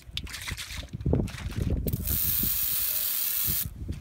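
Aerosol can of foaming engine degreaser spraying. There is a steady hiss of about a second and a half, starting about two seconds in and cutting off sharply. It comes after some irregular handling and rustling sounds.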